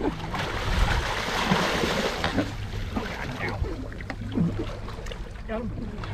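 Sea water splashing beside a boat's hull as a sailfish thrashes at the surface while held alongside, loudest in the first two seconds, over a low steady hum from the boat's idling outboard.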